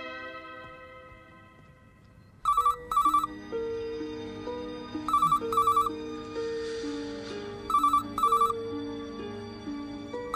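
Corded desk telephone ringing in double trills (ring-ring, pause), three times starting about two and a half seconds in, over soft background music of held notes.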